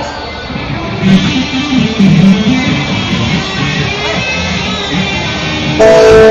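Live band music led by strummed guitar, loud and continuous, filling out about a second in.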